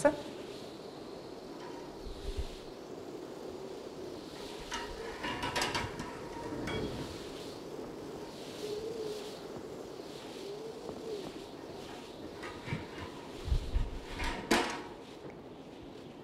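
A quiet room with short handling noises from a clinic scale's sliding height rod: a cluster of clicks and rattles about five seconds in, as the rod is raised and set on the head, and another near the end as it is put away, with a couple of soft thumps just before.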